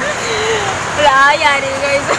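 A woman laughing, with a wavering, drawn-out giggle about a second in.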